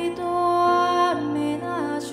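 Female vocalist singing slow, sustained notes into a microphone, the pitch bending downward near the end, over soft, steady instrumental accompaniment.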